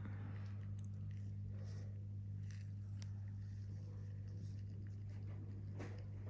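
Steady low electrical hum under faint scattered clicks and short scratchy rustles: the small handling sounds of a metal extractor tool and cotton pads working against the skin during blackhead extraction.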